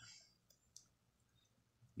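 Near silence broken by a few faint, short clicks, three of them in the first second.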